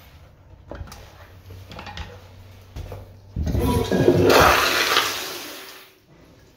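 Commercial toilet with a chrome flushometer valve flushing: a sudden rush of water starts about three seconds in, is loudest a second later, then dies away. A few light knocks come before it.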